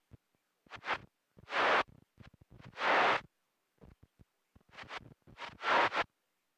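CB radio receiver breaking squelch on bursts of static hiss, cutting to dead silence between them: a short burst about a second in, longer ones near two and three seconds, and a cluster near the end. The noise comes from fading band conditions, with little but noise on receive.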